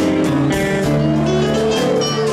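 Live blues-rock band playing an instrumental passage: electric guitar lead with sustained, bending notes over bass and drums.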